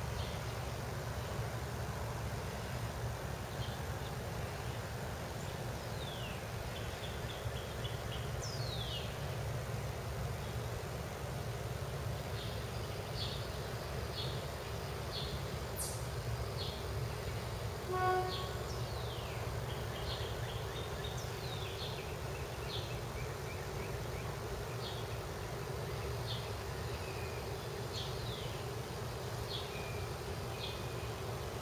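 Quiet backyard ambience: a steady low hum with scattered high chirps and quick downward whistles throughout, and one brief pitched honk-like note about eighteen seconds in.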